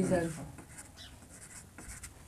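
Whiteboard marker writing on a whiteboard: a few faint, short strokes.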